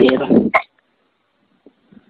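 Speech that ends about half a second in with a short, sharp sound, followed by near silence.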